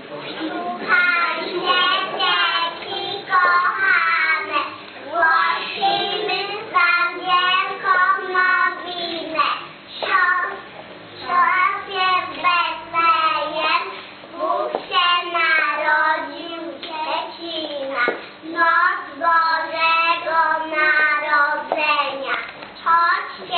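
Children singing a Polish Christmas carol (kolęda), phrase after phrase with short breaths between.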